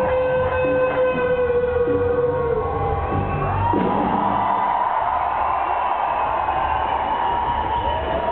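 Live electric guitar solo through a loud concert PA: a long held note that bends down in pitch about three seconds in, then a sustained high, singing note to the end.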